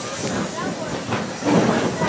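Mine-train roller coaster cars rolling along the track with a steady hiss.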